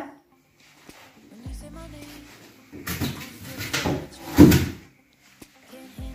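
Handling noises as a large prop paint roller is put down and moved: a faint click, a short low rumble, then rustling and knocks, the loudest knock about four and a half seconds in.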